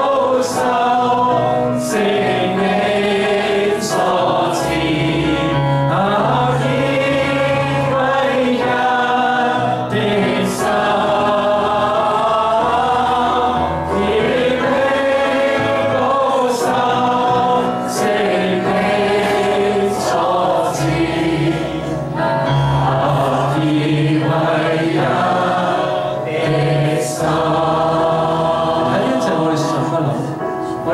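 A Chinese worship song sung by a man at a microphone, with other voices singing along over a steady instrumental accompaniment.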